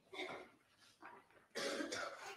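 A woman coughing and clearing her throat in three short bursts. The longest and loudest comes about one and a half seconds in.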